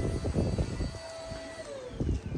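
A distant engine hum over a low rumble, with a steady tone that drops in pitch near the end, as of a vehicle passing.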